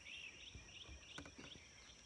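Faint songbird singing a quick run of short, repeated chirping notes over a steady high insect drone, with a couple of soft clicks partway through.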